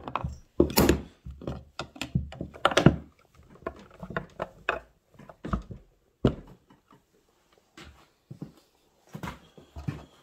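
Irregular clicks, knocks and thunks as an aftermarket side cover is handled and pushed into place over the bar and clutch of a Stihl 461 chainsaw, with a sharp knock about six seconds in.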